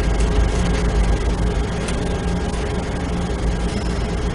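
Steady low hum with an even hiss over it, the background noise of the room and recording, and a faint click about two seconds in.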